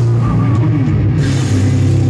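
Live heavy rock band playing loud: electric guitars and drums over a deep, sustained low note, heard from the crowd.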